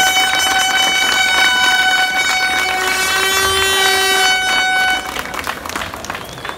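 A vehicle horn sounding one long steady blast of about five seconds, with a second, lower note joining partway through, then cutting off.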